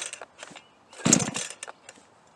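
Pull-starting a 62cc Chinese clone chainsaw on full choke: a short whirring rush as the recoil rope spins the two-stroke engine, about a second in, falling in pitch as the pull runs out, with the end of a previous pull at the very start. The engine is being cranked but not yet running.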